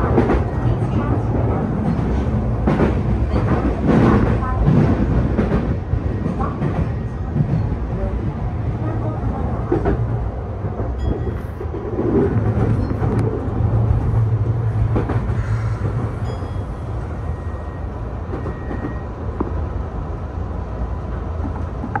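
Tokyu New 5000 series commuter train running, heard from inside the driver's cab: a steady rumble of wheels on rail with scattered clicks over rail joints. The level eases off over the second half.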